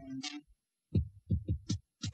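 Hip-hop beat intro: a short held low synth note with a hissing high hit, a brief gap, then a quick run of deep kick-drum thumps with a sharp high hit on top from about a second in.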